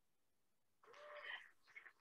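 Near silence, broken about halfway through by a brief, faint, voice-like call.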